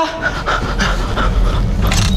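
A person panting hard, quick breaths about three a second, over a low steady rumble.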